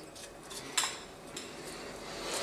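Three light clicks and knocks, the loudest just under a second in, from a knife and a slice of bait being handled on a wooden cutting board.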